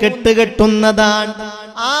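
A man's voice chanting in a drawn-out, melodic recitation style, holding long steady notes. The voice rises in a short glide near the end.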